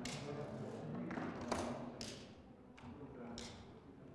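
Indistinct low talk of several people in a room, broken by four sharp clicks or taps: one at the start, two close together about a second and a half in, and one more near the end.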